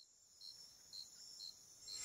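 Faint cricket chirping, short chirps repeating about twice a second, as night-time ambience.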